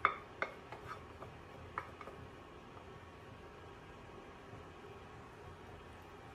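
A few light taps and clinks of a small pot knocking against a plastic food container as food is tipped into it, all in the first two seconds, the first the loudest; after that only faint steady room tone.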